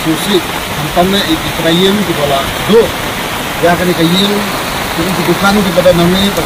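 A person talking over a steady background hiss.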